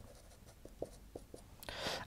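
Marker pen writing on a whiteboard: a few faint, short strokes about a second in.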